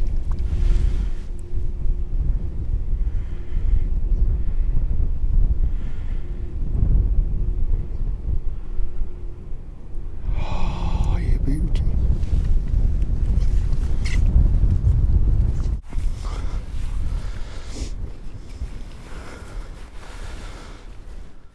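Wind buffeting the microphone: a loud, uneven low rumble that drops out briefly about sixteen seconds in and is quieter after.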